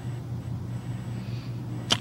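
A pause in a phone-in conversation: faint steady low hum and line hiss, with a short click near the end just before speech resumes.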